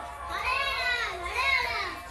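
A child's high voice making two drawn-out calls, each rising and then falling in pitch, over a faint steady tone.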